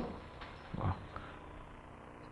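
Low room tone in a short pause between a man's spoken phrases, picked up by his headset microphone, with one short soft sound a little under a second in and a faint click just after.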